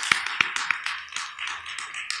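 Scattered hand clapping from a small audience: irregular individual claps rather than a dense roll, tailing off slightly toward the end.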